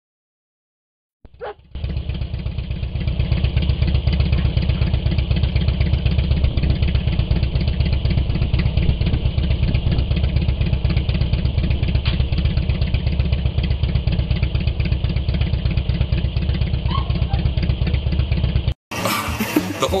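Harley-Davidson touring motorcycle's V-twin engine running steadily at idle with a fast, even pulse; it cuts off abruptly near the end.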